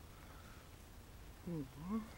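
A person's short wordless vocal sound, like a hum, about one and a half seconds in, its pitch dipping and then rising.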